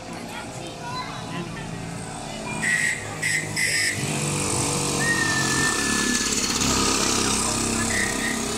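Small two-stroke engines of Jawa 50 type 555 mopeds racing past, the sound growing louder in the second half as they come up the street and pass close by. About three seconds in there are three short, sharp, high-pitched bursts, and around five seconds a thin whistle-like tone.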